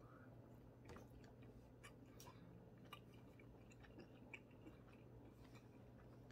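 Faint chewing of a slice of red wine and black pepper salami: soft, irregular little mouth clicks over near silence.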